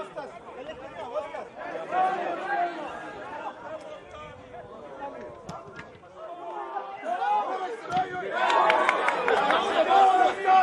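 Indistinct voices of several people calling out and chattering across an open football pitch, louder from about eight and a half seconds in.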